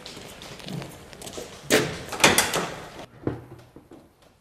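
Knocks and clatters of a fire engine's cab door and equipment being handled, the loudest about two seconds in and another shortly before the end.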